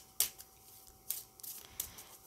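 A deck of tarot cards being shuffled by hand: a sharp snap just after the start, then a few softer clicks of the cards.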